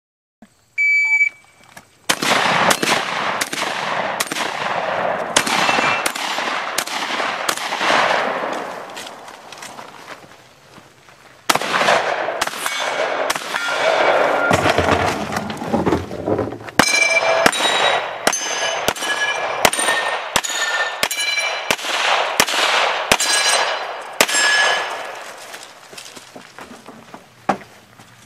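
Electronic shot-timer beep about a second in, then fast strings of gunshots from a competition long gun, with a short lull in the middle. In the later string most shots are followed by the ringing clang of steel targets being hit.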